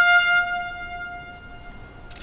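Military brass band holding a single final note that dies away over about a second and a half, ending a piece.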